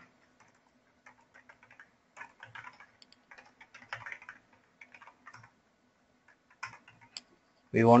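Typing on a computer keyboard: faint, quick key clicks in short irregular runs with brief pauses between words.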